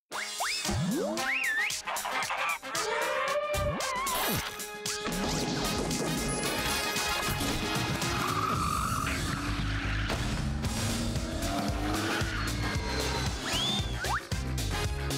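A cartoon-style interlude jingle. It opens suddenly with sliding whistle-like glides and sharp hits over music, then settles about five seconds in into a steady beat with a melody.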